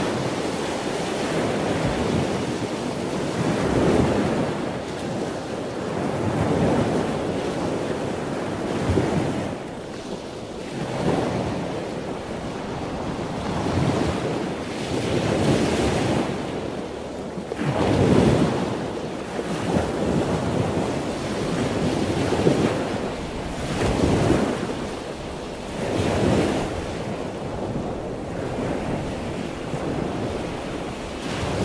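Rushing noise of surf, swelling and fading every two seconds or so like waves washing in, with no music over it.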